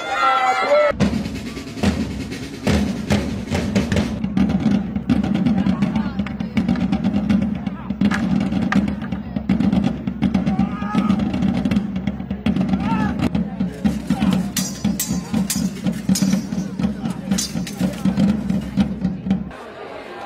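Drums playing a dense, fast run of strikes over a steady low sound, starting about a second in and stopping abruptly just before the end.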